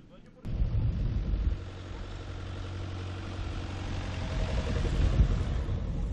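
An engine running steadily with a low rumble, mixed with outdoor noise. It cuts in suddenly about half a second in.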